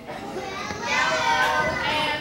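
Many children's voices calling out together, a crowd of schoolchildren answering a question at once, growing louder about half a second in.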